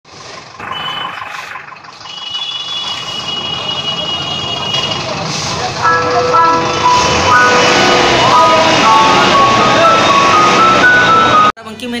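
Bus-depot traffic noise with engines running, and an electronic beeping tune from about six seconds in, typical of a vehicle's musical reversing horn. It all cuts off abruptly just before the end.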